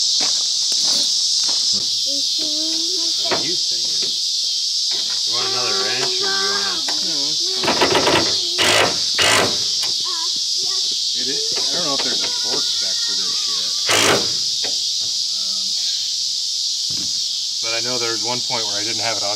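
A steady high-pitched chorus of chirping insects, with sharp knocks and a clatter of hand tools about eight seconds in and again about fourteen seconds in, as bolts are worked on inside a truck camper shell.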